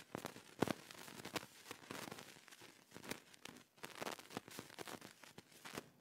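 Irregular crackling and rustling, a dense run of sharp clicks that stops shortly before the end.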